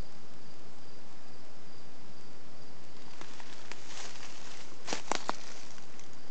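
Insects chirping steadily in the background, with dry fallen leaves rustling and crackling from about halfway through, loudest in a quick cluster of sharp crackles near the end.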